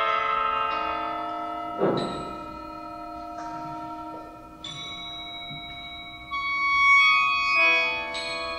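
37-reed sheng holding sustained reed chords that shift several times. About two seconds in, a single struck percussion note rings under the chords.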